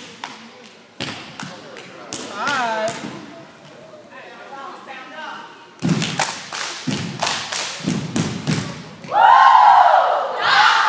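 Rhythmic thumps, about two a second, begin about six seconds in, typical of a group stomping in unison on a floor. Voices call out over them, with a loud shout near the end.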